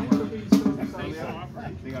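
People talking, with a couple of sharp drum hits on a snare drum; the loudest hit comes about half a second in.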